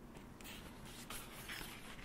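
Faint rustling of paper as a hardcover picture book is handled and closed, with soft scrapes of pages and cover.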